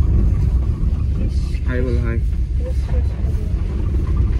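Steady low road and engine rumble inside the cabin of a moving car, with a brief voice about halfway through.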